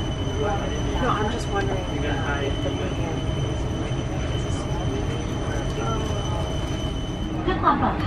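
Boeing 747 cabin ambience at the gate: a steady low rumble of the cabin air conditioning, with faint voices of passengers and crew and a thin steady high whine that stops near the end. Right at the end a woman begins a safety announcement in Thai.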